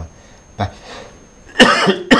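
A man coughs once, loud and sudden, near the end after a short quiet pause in the talk.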